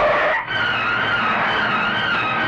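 Tyres skidding as a jeep brakes, a short screech in the first half second, over background film music that carries on with a wavering high melody after a brief dip.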